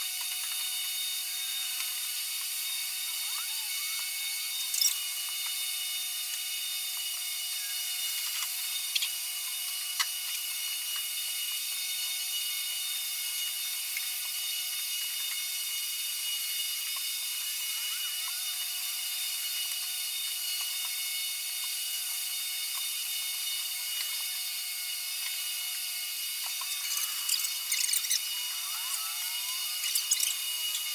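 Paint rollers on extension poles rubbing back and forth over a wooden plank floor, over a steady hiss, with a few light clicks and knocks and a busier stretch near the end.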